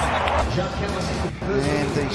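Background music playing steadily under the cricket highlight footage, with faint speech coming in near the end.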